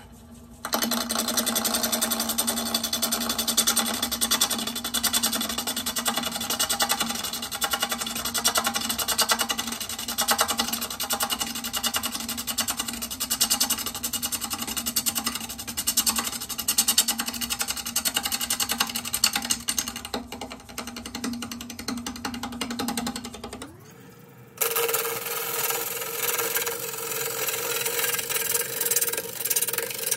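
Wood lathe spinning a punky, cracked blank of California pepper wood while a turning gouge cuts into it: a loud, fast rattling cut over the lathe's steady hum. About 23 seconds in, the hum rises in pitch, there is a short lull, and the cutting resumes.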